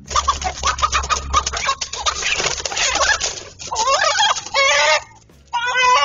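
Chickens in a scuffle: a dense flurry of wing-flapping and rustling for about the first three seconds, then loud squawking and cackling calls.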